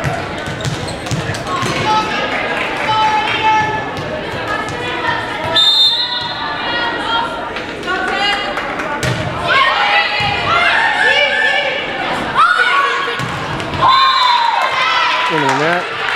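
Volleyball rally in a gym: repeated ball strikes and thuds on the court, with players' calls and spectators' shouts echoing in the hall.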